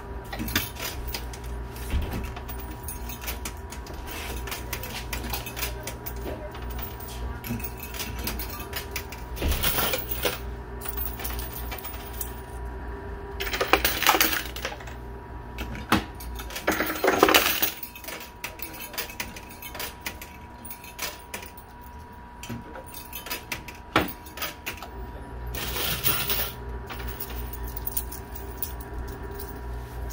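Coin pusher arcade machine: coins clinking and clicking as they drop onto the moving pusher shelves. There are two louder clattering spells midway through, over a steady machine hum.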